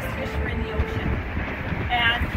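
A man talking over a steady low rumble.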